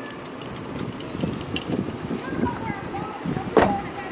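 Faint voices talking in the background, with one sharp knock about three and a half seconds in.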